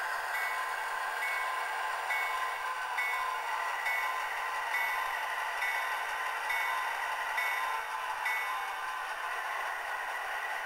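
Soundtraxx Tsunami sound decoder playing a dual EMD 567 prime mover through the model locomotive's tiny speakers: a steady, thin engine rumble with no deep bass. A short chiming tone repeats a little faster than once a second and stops about eight seconds in.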